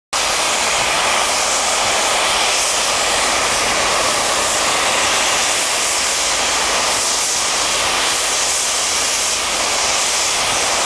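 LMS Princess Royal class steam locomotive 6201 Princess Elizabeth blowing off steam through its safety valves: a loud, steady hiss. The valves have lifted because the boiler is at full working pressure.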